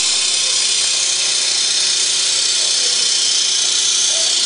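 A loud, steady hiss from a corrugated cardboard single facer machine, with a faint steady hum beneath it.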